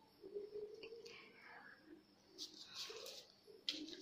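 Faint rustling of newspaper pattern paper and a cloth measuring tape being handled, with a short click near the end.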